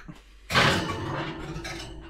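Glass baking dish pushed onto a wire oven rack: a sudden glass-on-metal scrape and rattle beginning about half a second in and tapering off.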